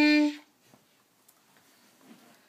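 A beginner's clarinet holding one steady note that cuts off about half a second in, leaving only quiet room tone.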